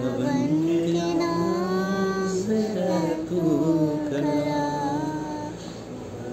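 A young girl singing an Urdu Christian hymn (geet) solo, holding long melodic notes that bend and glide between pitches.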